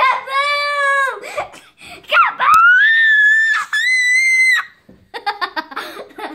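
A young girl shrieking with laughter: a long held "aah" at the start, a very high squeal from about two seconds in to nearly five, then fast giggles near the end.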